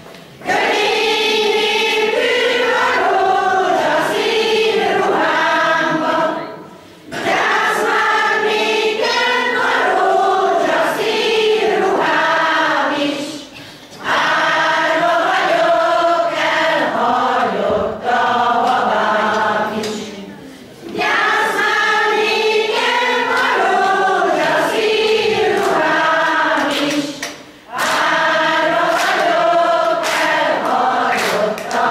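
A pensioners' folk-song choir of mostly women's voices singing a Hungarian song in unison, unaccompanied. The singing comes in phrases of about six to seven seconds, each broken by a short breath pause.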